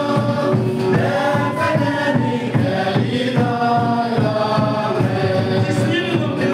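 Congregational worship singing: a group sings a chant-like gospel song in long held notes, led by a man's voice over a microphone and PA. Acoustic guitar and a drum keep a steady beat underneath.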